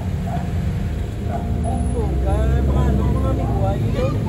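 Onlookers' voices calling out over a steady low rumble, with the voices thickening from about a second in and the rumble swelling around the middle.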